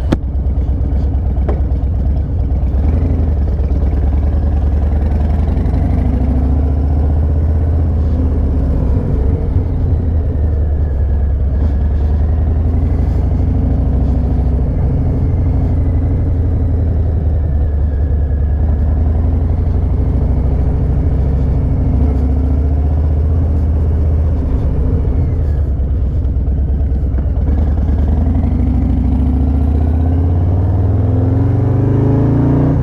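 Harley-Davidson Low Rider ST's Milwaukee-Eight 117 V-twin engine running as the bike is ridden at low speed, heard from the rider's seat. It holds a steady low note for most of the time, then rises in pitch near the end as the bike accelerates.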